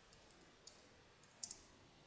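A few faint computer keyboard keystrokes over near silence: a light click just over half a second in, then a louder quick double click about a second and a half in.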